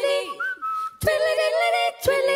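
Female a cappella group singing close-harmony chords. Between two chords, about half a second in, a single whistled note slides up and is held briefly before the voices come back in.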